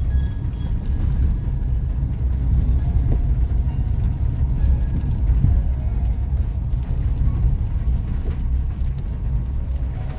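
Steady low rumble of a car driving slowly on a wet road, heard from inside the cabin.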